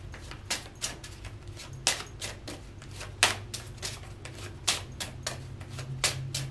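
Tarot cards being shuffled by hand: a run of irregular soft clicks and snaps, the sharpest about two, three and nearly five seconds in, over a steady low hum.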